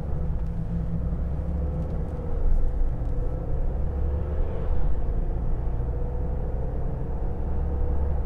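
Mercedes-Benz B 200 d (W247) driving at a steady speed, heard from a camera mounted on its body: an even low rumble of road and wind noise with a steady tone running through it.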